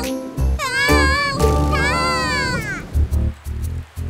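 Children's song music with a steady beat, and two drawn-out gliding vocal calls over it, one about a second in and another right after.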